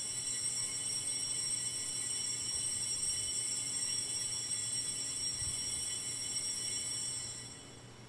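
Altar bells rung without pause for the elevation of the chalice after the consecration: a steady, bright, high ringing that stops about seven and a half seconds in.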